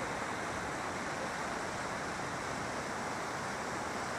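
Steady rushing of a strongly flowing river, an even hiss with no breaks.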